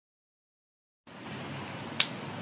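Dead silence for about the first second, then a steady hiss of outdoor background noise with a low hum beneath it.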